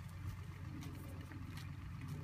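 A low, steady engine hum, with faint soft clicks over it.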